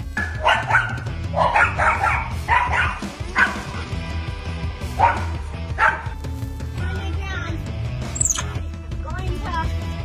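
Small dog barking in a rapid series of sharp barks at a black bear, over background music with a steady low beat.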